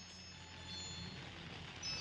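A pause in amplified speech: a faint steady low hum from the public address system, with a few brief faint high tones.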